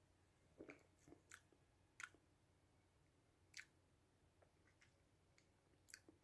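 Faint mouth sounds of a person drinking beer: soft swallowing gulps and lip or tongue clicks while he sips and tastes. There are about half a dozen brief ones spread through otherwise near silence.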